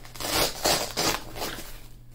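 Velcro (hook-and-loop) on a nylon plate carrier's plate pocket being ripped open, in a few short rasping pulls.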